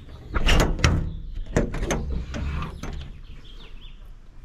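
Side compartment door of a truck service body being unlatched and swung open: a quick run of sharp metal clicks and clunks in the first second, then a few lighter knocks as the door settles.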